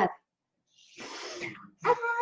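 A woman's audible breath, a soft hiss of about a second, between spoken phrases.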